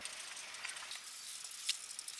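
Faint scratchy rubbing of a felt-tip marker colouring on a paper page, with a light tap a little before the end.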